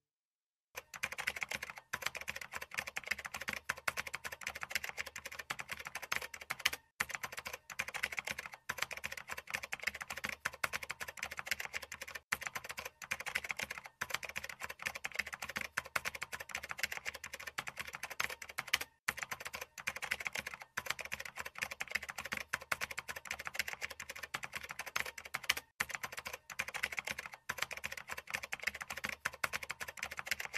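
Rapid keyboard typing: a dense run of key clicks starting just under a second in, broken by several brief pauses.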